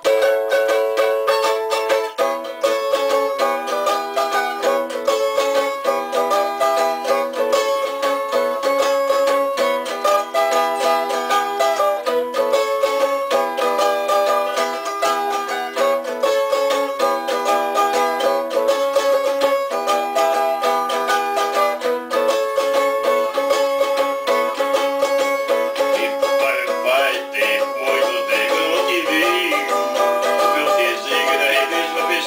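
A cavaquinho (small four-string Brazilian guitar) played solo: an instrumental tune of plucked chords and melody notes, changing chord every second or two at a steady pace. The sound is thin and bright, with no bass.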